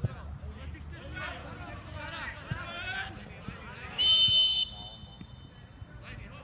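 A referee's whistle blown once in a short, sharp blast about four seconds in, the loudest sound here, over voices shouting on the pitch.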